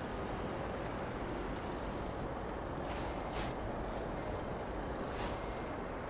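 Steady rushing noise of wind and water on the deck of a moving boat, heaviest in the low rumble, with brief hissing surges about a second in, around three seconds and just past five seconds.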